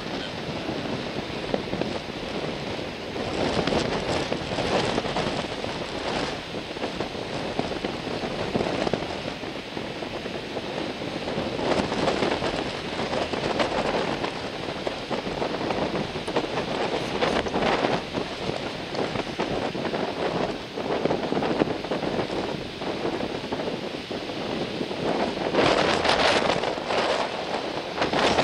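Strong wind buffeting the microphone, with surf breaking in the background: an even rushing noise that swells and fades in gusts, loudest near the end.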